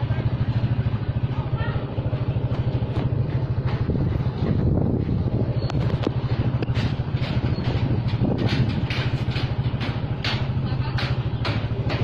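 Small motorcycle engine running steadily while riding along, with short rushes of noise that come often in the second half.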